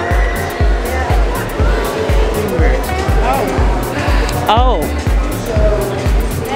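Background music with a steady, fast drum beat, with a voice briefly exclaiming "oh" near the end.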